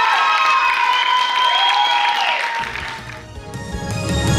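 Theatre audience applauding and cheering with music playing. About two and a half seconds in, this gives way to a music sting with a strong bass for the newscast's transition.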